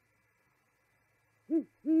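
Great horned owl hooting: after a near-silent second and a half, one short low hoot and then a longer one close behind it.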